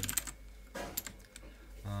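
A few separate keystrokes on a computer keyboard, typed at an unhurried pace, then a short spoken "uh" near the end.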